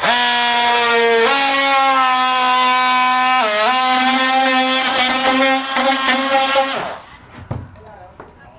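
Cordless oscillating multi-tool cutting into wooden trim with a steady buzz. It starts abruptly, rises slightly in pitch about a second in, and dips briefly in pitch under load about three and a half seconds in. It stops shortly before the end.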